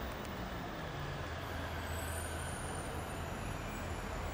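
Steady low rumble of city street traffic, with the drone of motor vehicles' engines.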